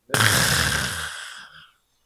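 A man's long, breathy exhale, a sigh-like "keu…", close to a handheld microphone. It starts loud and trails off over about a second and a half.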